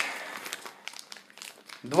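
Plastic-wrapped packs of hookah tobacco crinkling as they are handled, a quick irregular crackle.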